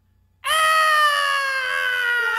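A cartoon character's voice letting out one long, loud, high-pitched scream that starts about half a second in, its pitch slowly falling.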